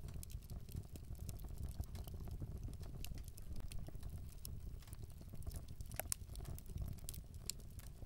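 Faint low rumble with scattered, irregular small clicks and crackles, one sharper click about six seconds in.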